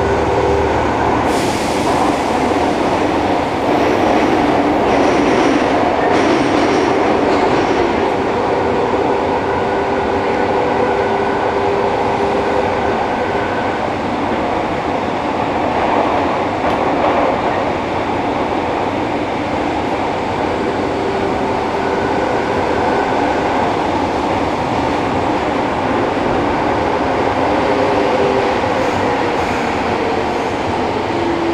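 Running noise inside a Fukuoka City Subway 1000N series car, fitted with Hitachi 3-level IGBT-VVVF control, as it travels through a tunnel: a loud, steady roar of wheels and running gear. Faint whining tones come and go over it.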